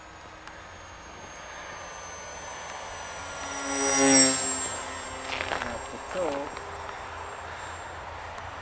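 SkyCarver RC model glider with a Hacker electric motor making a fast pass: a high whine grows louder to a peak about four seconds in, its pitch dropping sharply as the plane goes by, then fades away.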